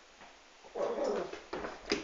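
Yorkie puppy making a short, half-second vocal sound about a second in, followed by a sharp click near the end.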